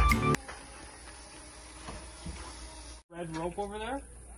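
Background music that stops abruptly less than half a second in, followed by quiet background noise; after a brief dropout near the end, a person starts speaking.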